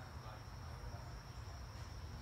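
An insect's steady, high-pitched trill runs on unbroken over a low rumble.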